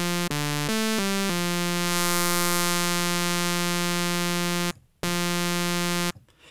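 A sawtooth synth lead from Reason's Thor synthesizer, hard-clipped and distorted through a Scream 4 overdrive, giving a buzzy tone with a lot of high end. It plays four quick notes at different pitches, then holds one long note, stops briefly, and holds another note.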